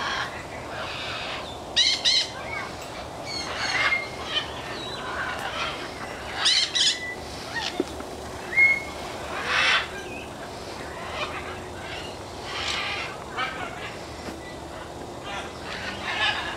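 Parrots calling at intervals from aviaries: short chirps, a few brief whistles and several louder harsh calls spread through.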